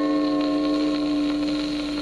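The closing held chord of a 1950s rhythm-and-blues band recording, playing from a record on a turntable. It is one steady chord that begins to fade at the very end.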